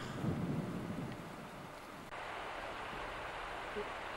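Steady outdoor background noise picked up by a camcorder microphone, with no distinct event. The noise changes abruptly about halfway through, where the recording cuts to a new take.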